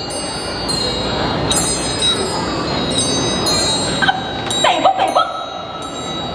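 High metal chimes struck again and again, each note ringing briefly, as a live stage sound effect. A short vocal sound cuts in about four to five seconds in.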